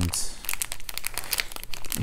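Plastic wrapper of a sealed bonus card pack crinkling as it is handled and pulled open by hand: a dense run of quick crackles with a short tearing hiss near the start.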